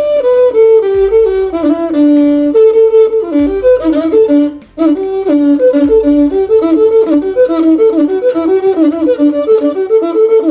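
Aligirigi, a Ugandan one-string tube fiddle, bowed in a quick melody of short stepping notes with a reedy, overtone-rich tone. It breaks off briefly a little before halfway, then carries on.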